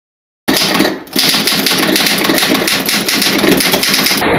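Loud, rapid rattling clatter of many fast clicks, a produced intro sound effect, starting after a half-second of silence, with a brief dip about a second in.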